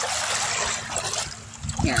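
Shallow water washing over shoreline stones: a rush of water that fades away over about a second and a half.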